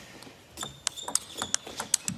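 Table tennis ball in a fast rally, clicking sharply off the rackets and the table, about four clicks a second.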